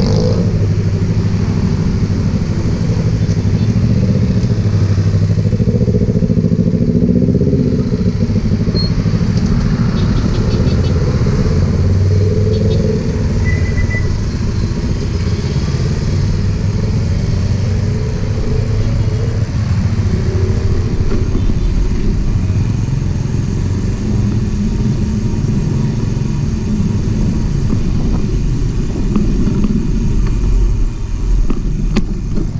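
Busy street traffic heard from a moving bicycle: motorcycle and car engines passing close alongside over a steady low rumble, with a brief short tone about halfway through.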